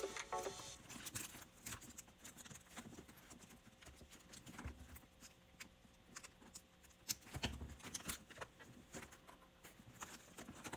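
Faint irregular crinkling and clicking of plastic wrap and bag hardware as a new handbag with plastic-wrapped handles is handled, with a few soft thuds. A short stretch of background music ends about half a second in.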